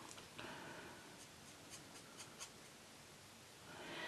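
Faint scratchy strokes of a felt-tip marker colouring on paper, coming irregularly.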